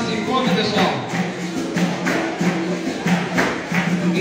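Capoeira bateria playing live: berimbaus sounding a two-note pattern, with pandeiro jingles and atabaque drum strokes in a steady rhythm.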